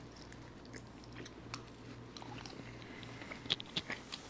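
Faint chewing and mouth sounds of someone eating a soft, doughy dish off a spoon, with a few light clicks near the end.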